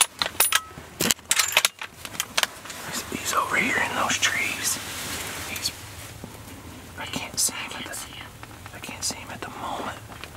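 Hushed whispering between people, with a quick run of sharp clicks and knocks from handling gear in the first two seconds or so.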